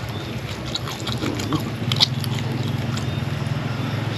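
A person chewing and picking at fish with his fingers, giving a few short clicks and smacks, over a steady low hum that grows louder about two seconds in.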